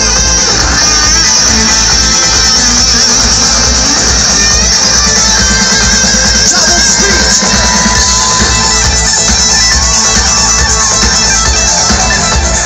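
A live band playing loud dance-pop music over a concert sound system, with guitars in the mix, heard from out in the audience. The sound is dense and steady over a pounding low beat.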